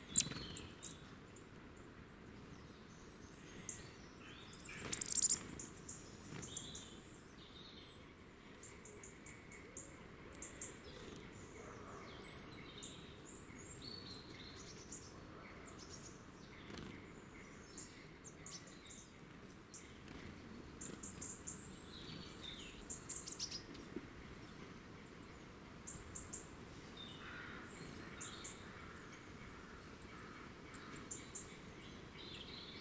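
Small woodland songbirds chirping and calling, with many short high calls scattered throughout and a busier cluster a little over two-thirds of the way through. A sharp click comes right at the start, and a loud, brief burst about five seconds in is the loudest sound.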